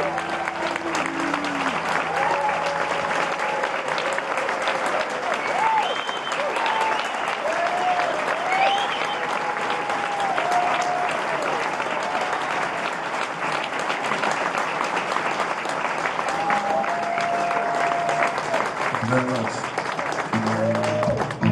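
Audience applauding and cheering with a few whoops between songs at a live concert. A sustained low note dies away in the first few seconds, and near the end an acoustic guitar starts picking the next song.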